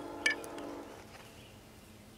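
Ferro rod and steel striker ringing after a single strike, a metallic tone that fades away over about a second. A brief high chirp sounds about a quarter second in.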